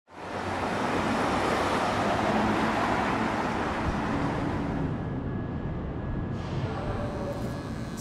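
City street traffic: cars driving along the road in a steady wash of tyre and engine noise, loudest over the first few seconds as vehicles pass close, then easing off after about five seconds.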